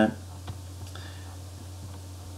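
Pause in speech: steady low electrical hum of the room or recording chain, with a couple of faint clicks about half a second and a second in.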